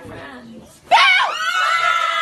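A woman screaming in fright at being startled: one long, loud, high-pitched scream that breaks out about a second in, after some low voices.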